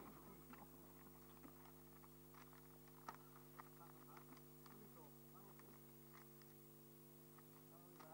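Near silence: a steady low electrical hum, with faint scattered clicks and distant voices.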